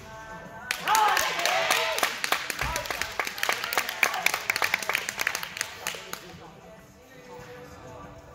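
A small group clapping and cheering with whoops for a finished uneven-bars routine; it starts suddenly about a second in and dies away around six seconds. Music plays underneath.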